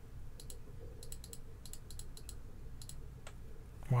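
A computer mouse button clicked repeatedly: about a dozen short, sharp clicks in an irregular run, many heard as a quick click-and-release pair.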